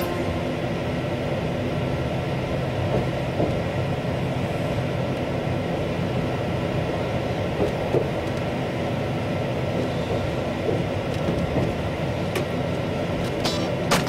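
Passenger train running along the line, heard from inside the carriage: a steady rolling noise of wheels on rail, with a few faint clicks.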